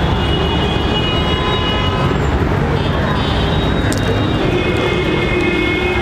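Steady outdoor traffic noise: a continuous low rumble with no break.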